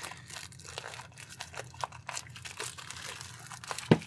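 Plastic mailer packaging crumpled and crinkled in the hands, a run of irregular crackles, as it is pulled at to open it.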